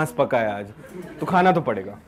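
A man's voice making two short wordless vocal sounds, the first falling in pitch, the second shorter and level.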